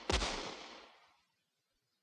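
A single gunshot just after the start, its echo dying away over about a second.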